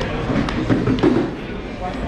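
Indistinct voices talking around a boxing ring in a large gym hall, with two sharp knocks about half a second apart near the middle.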